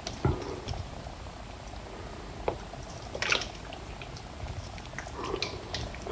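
Lathered, soapy hands rubbing and wringing together close to the microphone: a steady low rubbing with scattered wet, squishy clicks and a louder squelch about three seconds in.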